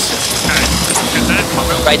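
Steady low rushing of wind and water picked up by the onboard microphone of an AC75 foiling racing yacht at speed, with brief crew voices over it and a steady hum joining in the second half.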